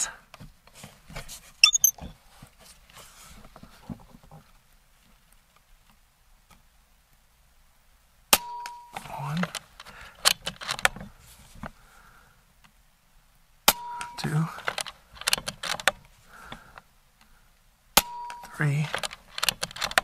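Three shots from an Air Venturi Avenger .22 regulated PCP air rifle, each a sharp crack, spaced about five seconds apart. After each shot come clicks and clinks as the action is cycled and the next pellet is loaded. The regulator is set high enough that he says it is pushing the pellets too hard.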